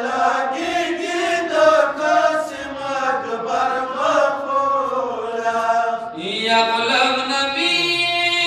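Several men's voices chanting a Pashto noha (mourning lament) together into a microphone, in a slow, wavering melody; a new phrase begins about six seconds in.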